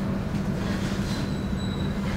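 Steady low room hum with a brief thin high squeak about a second in.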